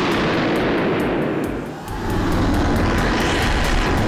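Animated flying sound effects: a loud rushing whoosh of air that fades just before two seconds in, then a rising whoosh with a low rumble underneath.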